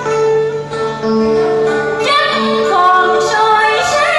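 Cải lương stage music: steady held instrumental notes, joined about halfway by a woman singing, her voice sliding between notes.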